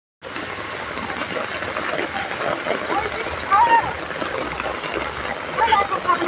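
Steady hiss of heavy rain pouring down onto the pavement. A voice speaks briefly over it about halfway through and again near the end.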